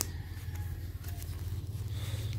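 Soft rustling and scraping of a fabric half-finger glove and its wrist strap being pulled on and tugged, with a single sharp click at the start, over a steady low hum.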